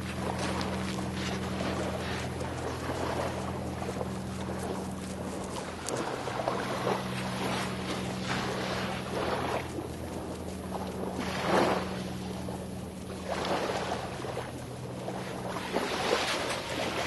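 Surf and wind noise on a beach, a steady wash that swells and fades every few seconds, with a steady low hum underneath.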